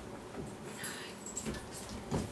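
Paper rustling with a few soft knocks, close to a lectern microphone, as pages are handled at the pulpit.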